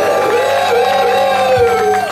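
Live band holding out the final notes of a song: a steady high tone over a lower note that wavers slowly, both cutting off at the very end.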